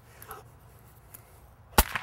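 A low-caliber cap gun fires a single sharp shot near the end.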